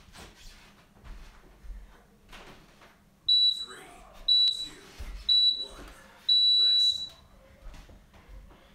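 Interval timer counting down the end of a work interval: three short, high beeps about a second apart, then one longer beep marking zero.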